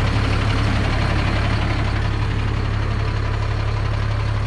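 Motorhome engine idling steadily, a continuous low hum with even engine noise above it.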